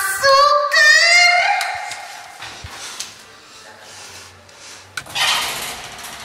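A voice singing a short phrase with held, wavering notes that fades out over a couple of seconds, then a brief burst of hiss about five seconds in.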